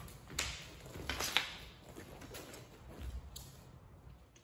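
A few short swishes and taps as a Japanese sword and its wooden scabbard are swung and moved in iai practice, the sharpest about a second and a half in.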